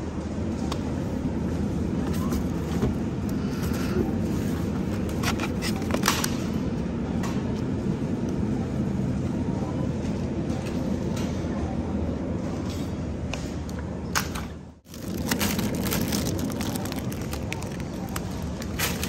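Steady supermarket background noise with scattered clicks and crackles of plastic produce packaging being handled. The sound cuts out abruptly for a moment about fifteen seconds in.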